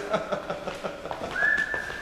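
A man laughing, then a single high whistled note starting about a second and a half in and held steady.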